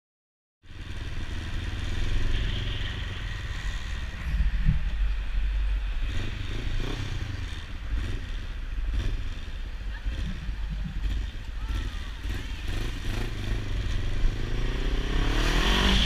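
Motorcycle engine heard from an onboard camera while riding slowly through town, the revs rising and falling and climbing near the end. It starts about half a second in, after silence.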